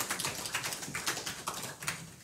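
Small congregation applauding, the clapping thinning out and fading away.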